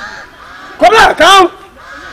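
A man's voice calling out two loud, drawn-out syllables about a second in.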